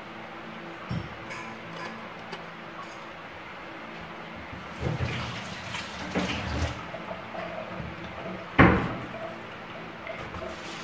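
Kitchen prep sounds: a round eggplant handled and cut with a knife on a wooden chopping board, with scattered small knocks, a cluster of them after about five seconds, and one loud thump a little before the end.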